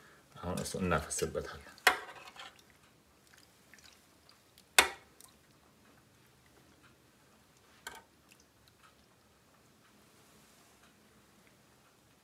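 Sharp clinks of kitchenware: a small one about two seconds in, a loud one about five seconds in and a lighter one near eight seconds, as a wire whisk is set down on a stainless steel baking pan and a glass bowl of cream sauce is tipped over sliced potatoes. Between the clinks the pouring is faint.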